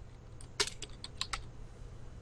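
Computer keyboard being typed on: a quick run of about seven or eight keystrokes, typing a short word.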